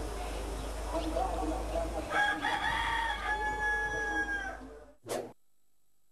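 A rooster crowing once, a single long call of about two seconds that falls away at the end, over street background noise with a low hum. A brief burst of noise follows just before the sound cuts off.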